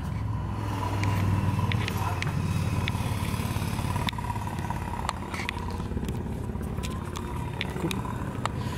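Steady low hum of a motor vehicle engine running, strongest in the first few seconds, with scattered faint clicks.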